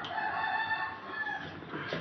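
A rooster crowing once: one long call that fades out shortly before the end.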